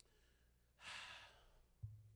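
A man's faint breathy sigh into a handheld microphone about a second in, then a short soft bump on the microphone near the end.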